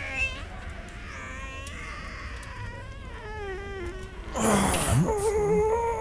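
A man straining with his voice: a high, quavering whine for the first four seconds, then a louder, steadier held groan. It is a comic imitation of straining to soil himself.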